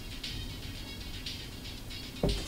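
Faint music leaking out of open-fit AirPods 4 earbuds played at full volume and picked up by a nearby microphone with its gain raised. Little but a thin ticking beat, about twice a second, comes through; this is the sound bleed from the earbuds.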